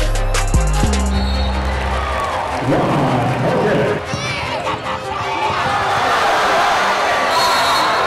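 Backing music with a heavy bass beat that cuts out about two seconds in. It gives way to live basketball game sound: arena crowd noise and a basketball being dribbled on the court.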